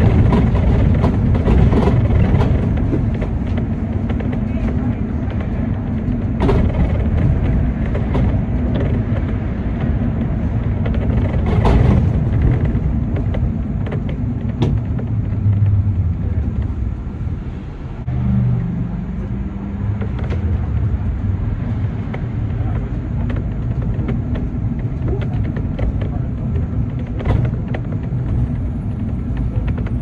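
City bus engine and tyre rumble heard from inside the moving bus, with a few sharp knocks or rattles along the way. Near the middle the engine note briefly settles into a steady hum.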